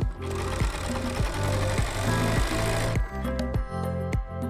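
Domestic sewing machine running for about three seconds and then stopping, sewing a lengthened straight stitch through stretch knit to topstitch an elastic waistband. Background music with a steady beat plays throughout.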